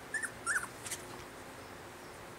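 Cocker spaniel puppy squeaking: two short, high, wavering squeaks about half a second apart, then a faint click.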